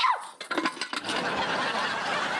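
Pressure cooker whistle going off: a few sharp clicks, then from about a second in a steady loud hiss of escaping steam. The tail of a gliding musical tone ends just as it begins.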